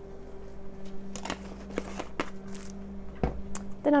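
Grated parmesan cheese being shaken from its canister into a pan of sauce: short scattered rustles and light taps as the can is handled, and a low knock a little after three seconds in. A steady low hum runs underneath.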